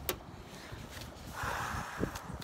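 A click, then a brief rustle in the last half-second over a low rumble: handling noise from the card deck or nylon jacket close to the microphone.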